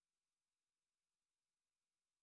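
Near silence: the audio track is essentially empty, with only a very faint, even hiss.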